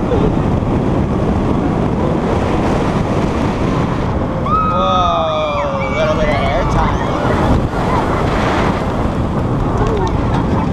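Heavy wind buffeting the microphone of a rider on a Bolliger & Mabillard steel flying roller coaster (Manta) as the train runs through its course at speed. From about four and a half to six seconds in, several riders scream, their voices sliding downward in pitch.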